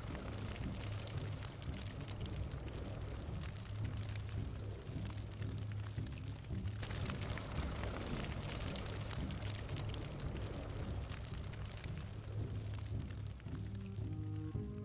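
A low, steady background music drone, with a soft crackling hiss over it: a sound effect for red smoke rising from a smouldering lightning-strike crater.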